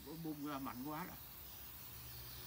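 Steady hiss of compressed air from an air blow gun used to clear outboard carburetor passages. A man's low voice speaks briefly during the first second.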